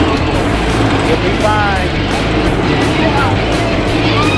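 Superman: Ultimate Flight flying roller coaster climbing slowly: a steady low rumble with a regular clacking, about three or four a second, as it rises. A rider gives a short falling yell about a second and a half in.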